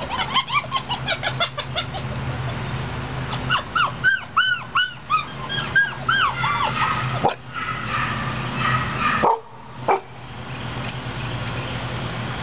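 Borador puppies yipping in play, rapid series of short, high, rising-and-falling cries, in one burst at the start and another from about three and a half to seven seconds in. A steady low hum runs underneath, with a couple of sharp knocks later on.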